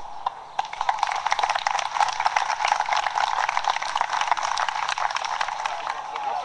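Crowd applauding, starting about half a second in: a dense, steady patter of many hands clapping.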